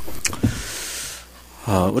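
About a second of soft hissing, rustling noise with a few small clicks, then a man starts speaking Korean in a sermon voice near the end.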